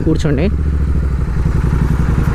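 Royal Enfield 650 parallel-twin motorcycle engine running steadily while the bike is ridden, its low note holding even with no revving.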